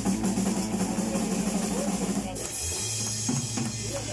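A drum kit played live in a drum solo: fast strokes across the kit over a held note from the band. The hits thin out a little past halfway.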